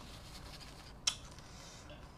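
Close-miked chewing of a mouthful of rice noodles and blanched vegetables, with one sharp crunch about a second in.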